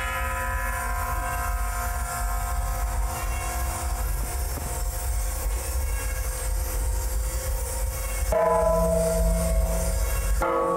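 Hanging metal sculptures cast from bomb metal and stainless steel and tuned to 432 Hz, struck with a mallet and ringing like a gong or bell with many steady overtones that hold and slowly fade. A second strike about eight seconds in brings in a new, lower set of tones.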